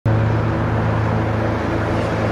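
A car driving steadily on a road: a constant low engine hum over tyre and road noise.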